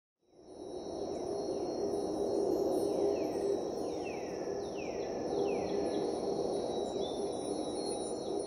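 Night ambience of crickets: a steady high trill over a low, even rumble, fading in just after the start. Through the middle, a run of falling chirps repeats about once or twice a second.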